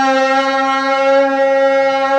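A man's singing voice holding one long note at a steady pitch, amplified through a microphone, as in the drawn-out notes of sung poetry recitation.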